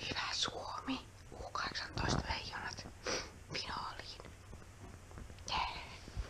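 A person whispering, in several short phrases with brief pauses between them.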